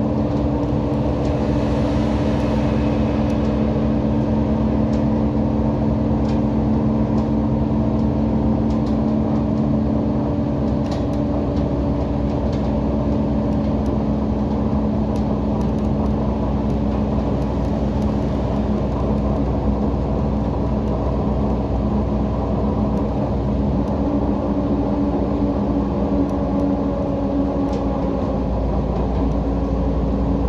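Heuliez GX127 city bus's diesel engine running with road and tyre noise while the bus cruises at steady speed: a constant engine drone with a few faint clicks.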